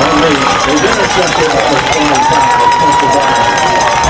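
Football crowd of spectators shouting and cheering over one another. A single steady held tone starts a little past halfway.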